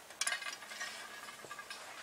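Faint handling sounds: a light click shortly after the start, then soft clinks and rustling.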